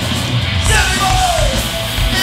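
Hardcore punk band playing live: distorted electric guitars, bass and drums, with the vocalist yelling a line that falls in pitch about a second in.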